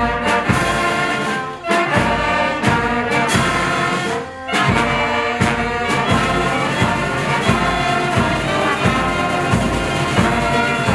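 Brass band playing a slow ceremonial piece, with a bass drum beating steadily underneath.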